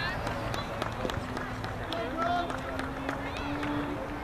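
Outdoor soccer match sounds: distant shouting voices from the field and sideline, with scattered sharp knocks of balls being kicked and footfalls.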